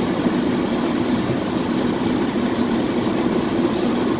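Steady road noise of a car in motion, heard from inside the cabin.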